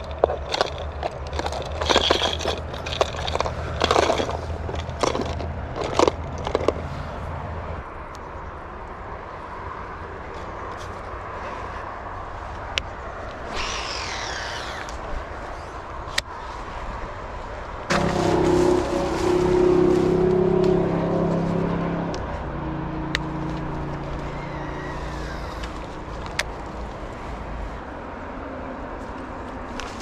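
Hard plastic lures clicking and rattling against each other and the compartments of a plastic tackle box as they are sorted through, for the first several seconds. Later a steady mechanical whirring hum with several tones runs for about four seconds.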